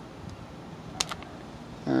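A foil trading-disc pack being handled in the hand: one sharp click about halfway through, over a steady faint hiss.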